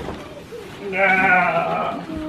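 A person's voice making a held, wavering vocal sound like a bleating laugh, about a second long, starting about a second in.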